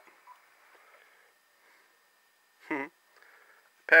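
Near silence with a faint hiss, broken by a brief voiced murmur about two-thirds of the way through, then a man's voice starting to speak at the very end.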